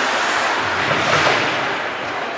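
Ice-rink game noise during a hockey game: a loud, steady rush of echoing arena sound with indistinct voices in it.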